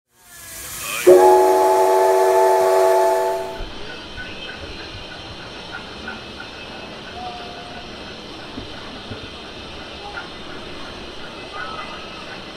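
A steam whistle sounds several notes at once for about two and a half seconds, starting with a rush of steam and cutting off sharply. After it a faint steady steam hiss carries on.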